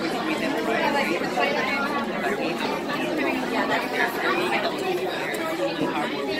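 A man talking over constant crowd chatter, with many voices overlapping.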